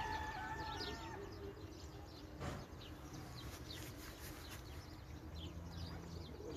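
Faint background of small birds chirping repeatedly, with a long held call from a domestic fowl in the first second. A single short knock about two and a half seconds in.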